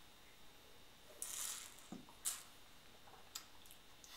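A sip from a wine glass: a short breathy hiss about a second in, then a light knock a moment later as the glass is set down on the cloth-covered table, with a small click near the end.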